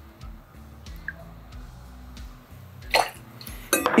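Quiet background music, with faint clinks of a metal jigger and glassware as juice is measured out. There is a short burst of noise about three seconds in and a few light clicks just before the end.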